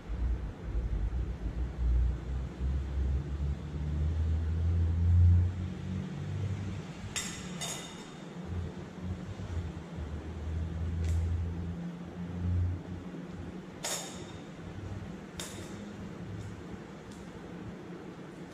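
Light clinks and taps of laboratory glassware, a glass pipette and glass petri dishes being handled and set down, about seven sharp clicks with two close together a third of the way in and the strongest a little past two-thirds. A low rumble runs under the first two-thirds.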